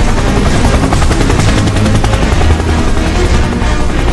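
Helicopter rotor sound with a rapid, even chop, laid over loud background music.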